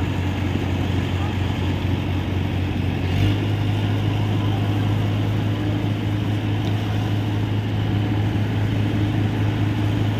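A fire engine's pump engine runs steadily, driving water through a hose onto a burning car. About three seconds in there is a brief knock, and after it the drone is louder.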